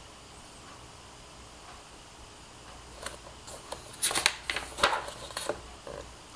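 Paper pages of a large, thick dictionary being handled and turned: a few short, crisp rustles starting about halfway through, the loudest a little after the middle.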